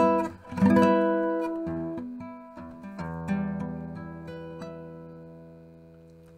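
Steel-string acoustic guitar playing an E minor chord in a high-neck voicing, with the pinky partially barring the first and second strings at the twelfth fret. It is struck a few times, twice near the start and again about three seconds in, and left to ring and fade.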